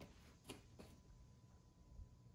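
Near silence: room tone, with a few faint clicks in the first second, the clearest about half a second in.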